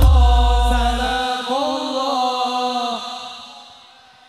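Sholawat singing in dangdut koplo style: voices hold a long sung phrase over a deep bass note that stops about a second in, then the singing fades out near the end.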